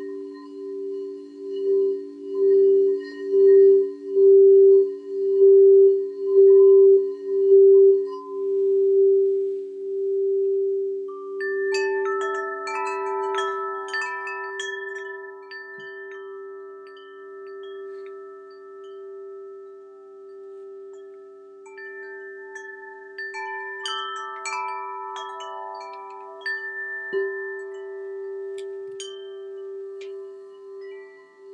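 A crystal singing bowl rings with a steady low hum that pulses in loudness for the first ten seconds, then carries on more softly. From about eleven seconds in, a cluster of bright chimes tinkles over it, and a second run follows around twenty-four seconds.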